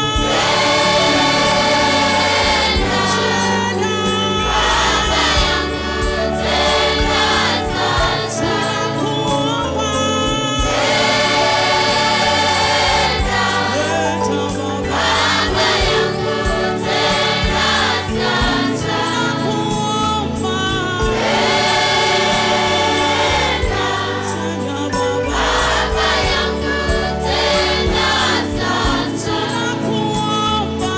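Gospel choir singing over instrumental backing, a steady worship song.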